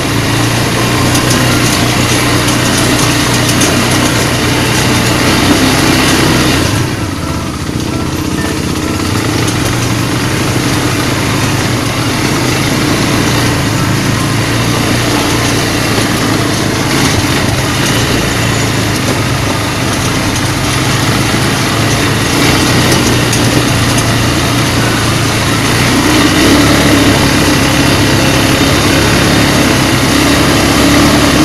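ATV engines running steadily on a dirt trail. The engine note drops away briefly about seven seconds in, then picks up again and grows louder near the end.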